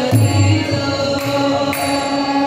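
Sanskrit devotional hymn sung kirtan-style, led by a woman's voice over a sustained harmonium and mridanga drum.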